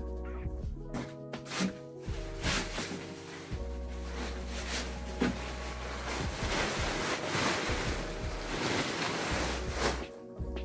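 A plastic tarpaulin rustling and crackling as it is dragged and gathered up, louder in the second half, over lo-fi background music.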